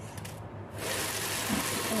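Kitchen tap water running into a plastic bowl of shiitake mushrooms in a steel sink, as a steady hiss that starts suddenly just under a second in.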